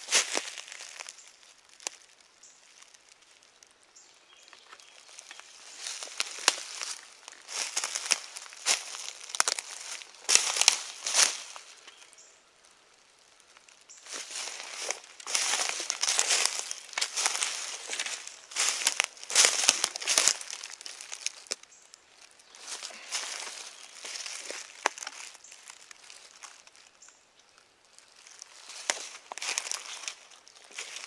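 Footsteps crunching and rustling through dry leaf litter, in irregular spells of slow walking broken by short pauses, with a quiet pause a little before the middle.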